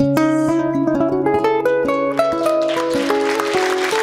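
Acoustic guitars playing the closing instrumental bars of a song: a run of single picked notes over a held low bass note. Audience applause starts building near the end.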